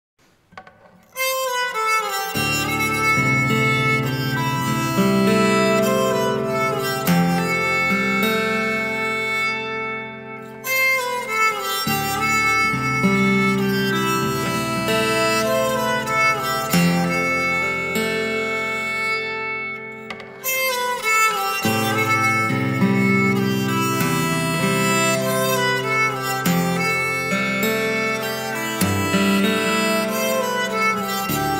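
Acoustic guitar played with a bow: long, held notes with a reedy, fiddle-like tone over a steady low drone, mixed with fingerpicked notes. The playing starts about a second in and thins out briefly twice.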